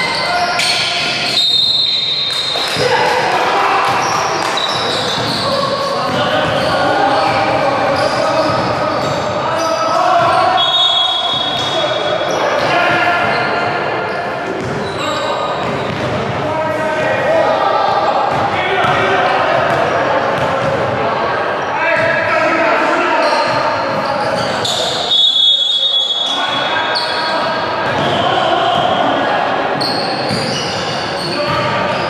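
Basketball game play on an indoor hardwood court: the ball bouncing and players' voices calling out, echoing through a large gym hall.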